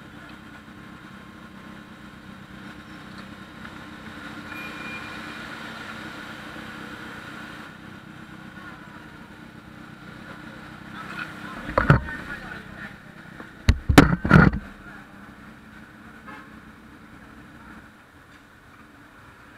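Motorcycle and car traffic at a junction: scooter engines idling and pulling away close by, a steady drone. About two-thirds of the way through come a few short, loud thumps.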